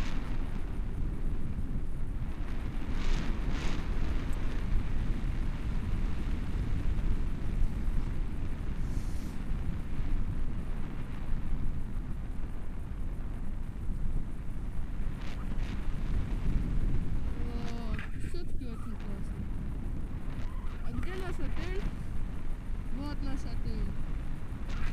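Airflow buffeting the camera microphone in flight under a paraglider: a steady low wind rumble, with a few faint words near the end.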